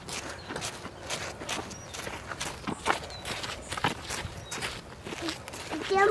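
Footsteps on a dry, sandy dirt trail, an uneven run of crunching steps from several people walking.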